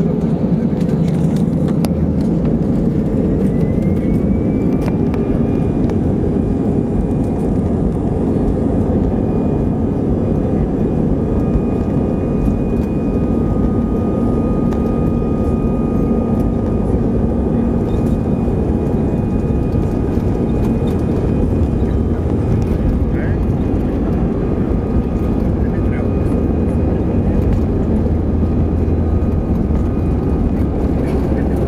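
Airbus A320 cabin noise heard from a seat over the wing: the jet engines running steadily at low power on the ground before takeoff, a constant rumble with a faint whine that rises slightly about four seconds in.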